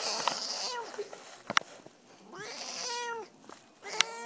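Domestic cat meowing in protest at being petted: a short cry near the start and a longer, drawn-out complaining meow in the second half. A rustle at the very start and a sharp click midway.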